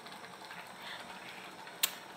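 Faint room noise with a single sharp click near the end.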